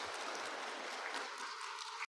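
Audience applauding, a steady patter of many hands that thins slightly near the end.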